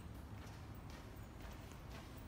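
Footsteps on a hard tiled floor, faint even taps about two a second, over a low steady rumble.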